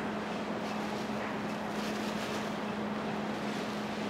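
A steady hum with one constant low tone over an even noise, unchanging throughout.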